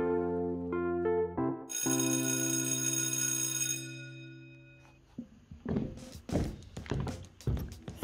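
A short musical transition: a quick run of notes, then a sustained chord that rings and fades away over about three seconds. From about five and a half seconds in, irregular knocks of footsteps going down wooden stairs.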